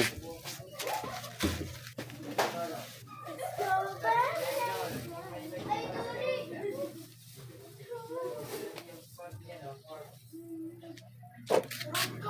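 Voices talking in the background, children among them, with a steady low hum underneath.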